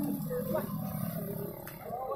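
Indistinct voices of people talking in the background, with a low rumble fading out in the first moment.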